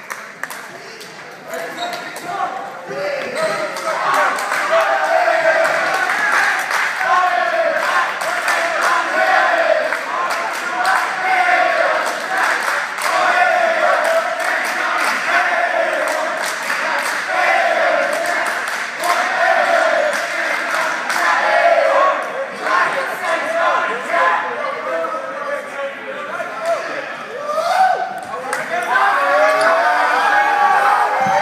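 A basketball bouncing on a gym floor, with many sharp knocks, amid shouting voices in a large, echoing hall.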